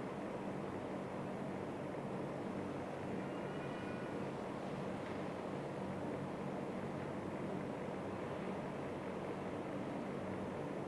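Steady low mechanical hum with a hiss of room noise throughout, with a faint brief high-pitched tone about three and a half seconds in.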